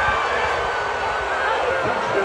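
Football stadium crowd noise: a steady din of many voices shouting at once.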